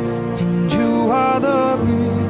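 Slow, tender pop ballad music. A held melody line bends upward about halfway through.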